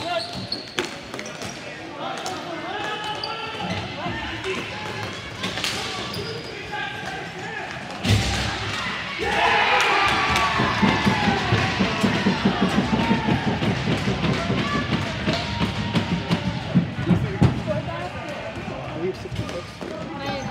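Ball hockey game sounds on an indoor court: a sharp crack about eight seconds in, then players shouting and cheering after a goal, over many quick thuds of shoes running on the court.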